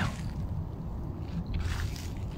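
Footsteps on a path strewn with dry fallen leaves, with a steady low rumble underneath; one step scuffs through the leaves more loudly about one and a half seconds in.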